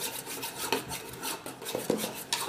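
A metal spoon scraping and stirring in a ceramic bowl, a quick run of short scrapes and clinks.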